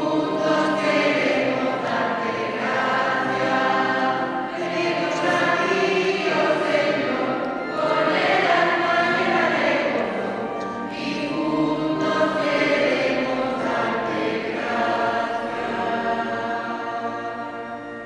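Church choir singing a hymn, accompanied on an electric keyboard. The singing fades away over the last couple of seconds.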